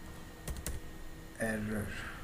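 Computer keyboard keystrokes from typing code, with two sharp clicks about half a second in.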